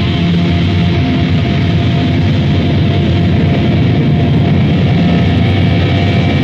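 Metal band recording playing loud and without a break: dense distorted band sound over fast, rapid-fire drumming, with the dull, band-limited top of a 1990s underground demo cassette.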